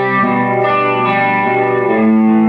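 Electric guitar played through a board of effects pedals into a clean amplifier: sustained, ringing chords that shift a few times, with a clear chord change near the end.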